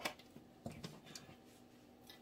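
A few faint, short clicks and light handling noise from heavy wire cutters and stiff artificial flower stems, the click right at the start the loudest.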